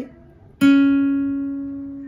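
A classical guitar's open second (B) string plucked once about half a second in, the single note ringing and slowly fading.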